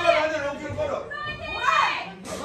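Several high-pitched voices shouting and calling out from ringside, overlapping, with one drawn-out call about a second in.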